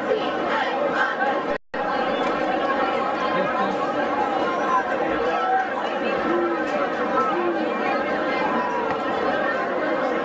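Spectators at a football game chattering, many voices overlapping into a steady babble. The sound cuts out for a moment about one and a half seconds in.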